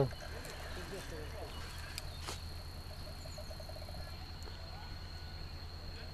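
Quiet outdoor ambience with faint distant voices, a steady low hum and a thin, steady high-pitched whine. There is a single click a little after two seconds in.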